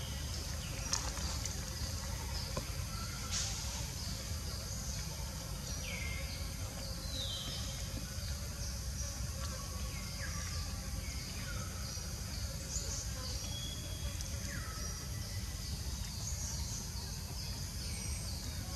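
Outdoor woodland ambience: a steady high insect drone over a low background rumble, with scattered short falling chirps and calls and a couple of faint clicks.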